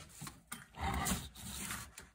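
Rubbing and rustling as the schematic paper and the radio's metal chassis are shifted across a wooden workbench, loudest about a second in.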